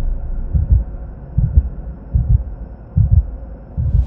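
Sound design for a TV channel's animated logo: deep double thumps like a heartbeat, about one beat every 0.8 seconds, over a faint hum.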